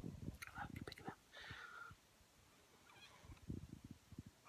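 A smoker taking a short, breathy drag on a cigarette about a second in, then exhaling the smoke near the end, the breath buffeting the microphone in soft low rumbles. Small mouth clicks come early on.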